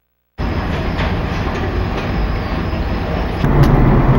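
Steady rumble and rattle of a passing freight train, starting abruptly about half a second in. Near the end it gives way to the louder, steadier road and engine noise of a car heard from inside the cabin.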